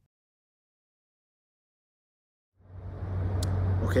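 Dead silence for about two and a half seconds, then a steady low hum fades in and holds: the background drone of an air-supported indoor sports dome.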